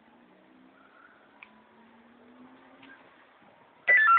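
A faint low background hum with a single click about a second and a half in. Right at the end, a two-way radio sounds a loud stepped electronic beep.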